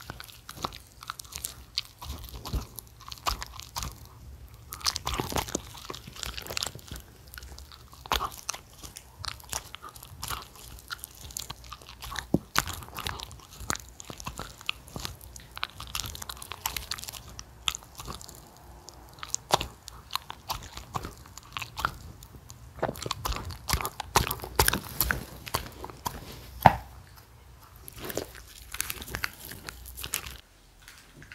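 Shetland sheepdog biting and chewing pieces of pan-fried jeon taken from a hand, close-miked: an irregular run of crunches and mouth clicks.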